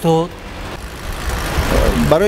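A low rumble with a hiss over it, swelling about a second and a half in, as a motor vehicle goes by, after a man's brief words at the start.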